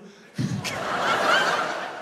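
A large theatre audience laughing. The laughter breaks out about half a second in, swells, then eases off.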